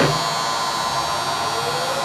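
Bennet CG-14 rotary surface grinder running, a steady machine hum with several high whining tones over it. A short click comes at the very start and a faint rising whine near the end.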